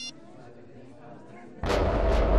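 A brief high electronic chime, then about a second and a half in a sudden loud boom that hangs on as a heavy low rumble: a dramatic TV sound-effect hit.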